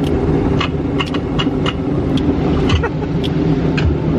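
Automatic car wash heard from inside the car during its foam stage: a steady low rumble of the machinery with irregular sharp taps of spray and brushes on the bodywork and windscreen.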